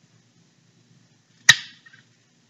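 A kitchen knife cutting through a strawberry and striking a plastic cutting board: one sharp knock about a second and a half in.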